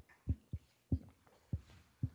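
Microphone handling noise: four soft, low thumps spread irregularly over two seconds.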